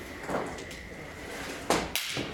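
Sharp electrical crack of a large charged electrolytic capacitor (about 7000 µF) being shorted out with pliers, a spark discharge across the terminals. There are two snaps about a quarter second apart near the end.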